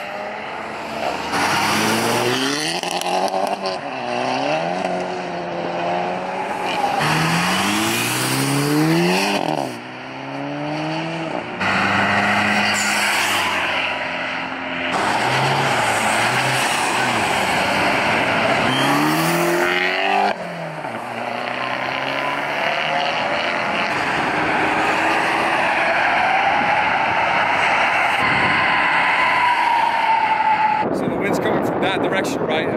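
Cars accelerating away one after another, their engines revving up and dropping back at each gear change, over tyre and road noise. A smooth whine rises and falls near the end.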